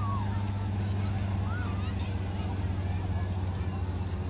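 A steady low engine hum, with faint voices in the background.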